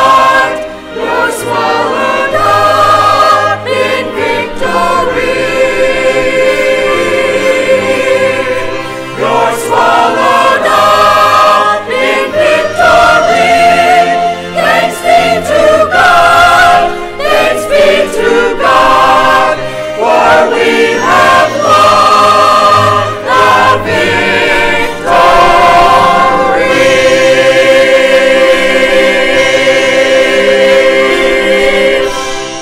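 Church choir singing in harmony with musical accompaniment, sustained chords moving over a changing bass line.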